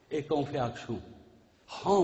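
A man speaking into a microphone in a sermon-like monologue: one short phrase, a brief pause, then he speaks again near the end.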